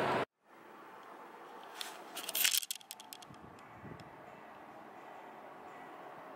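A short burst of rustling and scraping about two seconds in, then a few faint clicks, over quiet room tone. These are handling sounds around takeout food boxes in a paper bag.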